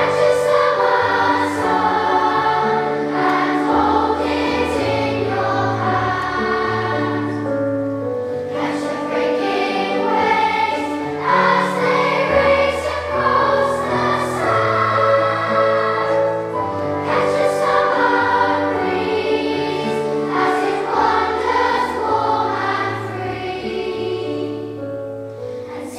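A children's choir of primary-school pupils singing together, with a low instrumental accompaniment of held bass notes beneath the voices.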